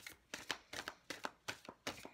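A tarot deck being shuffled by hand: a quick, irregular run of crisp card snaps, about six a second.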